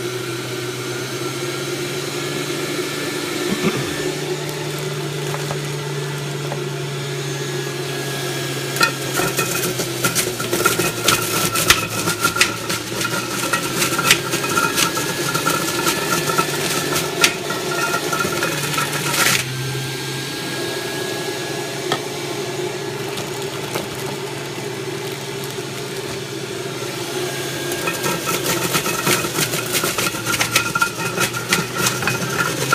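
Breville centrifugal juicer's motor running steadily at a low speed setting as carrots are shredded. From about nine to twenty seconds in, many sharp cracks and rattles come in over the hum.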